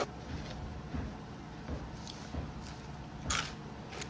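Quiet room tone with a few faint handling noises from a plate of fries on a paper towel, and a short crisp noise about three seconds in.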